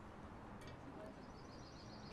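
Near silence: quiet outdoor background with faint high-pitched chirping in the second half.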